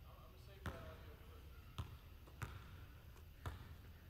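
Basketball bouncing on a hardwood gym floor, four separate faint bounces at uneven intervals.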